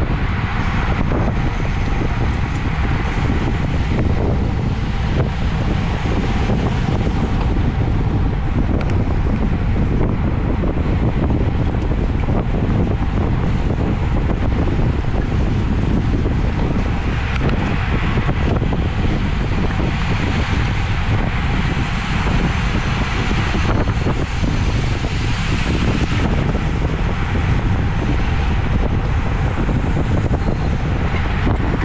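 Wind buffeting an action camera's microphone on a road bike moving at about 30 mph: a loud, steady rush of noise heaviest in the low end, with a brighter hiss for a stretch in the second half.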